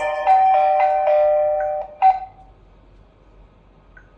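HOMSECUR video intercom indoor monitor ringing with its chiming ringtone melody, a run of bell-like notes that cuts off about two seconds in with one last short chime, as the call is ended at the monitor. Then only a faint hum.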